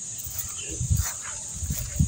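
Insects buzzing steadily in a high-pitched drone, with a few faint short sounds and low rumbles about a second in and again near the end.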